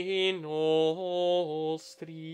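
Unaccompanied Gregorian chant sung by a solo male voice, moving step by step through held notes on a vowel. The voice stops shortly before the end, with a brief hiss.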